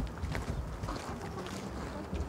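Outdoor wind rumbling on the microphone, with a few faint ticks.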